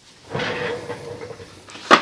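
A swivel office chair turning and rolling, a rolling rumble with a faint steady squeak, followed near the end by one sharp knock.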